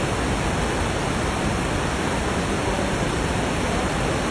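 A large waterfall in heavy flood, its muddy spate pouring down in a steady, loud, unbroken rush of water.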